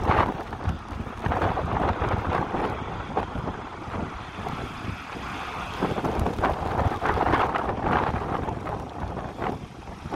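Distant jet engine noise from an Airbus A319 moving fast along a wet runway, heard through strong wind buffeting on the microphone that swells and drops unevenly.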